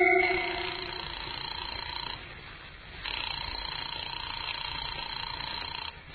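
Old-time radio sound effect of a telephone ringing at the start of a call: a ring of about two seconds, a short break, then a longer second ring. The tail of an organ music bridge fades out at the start.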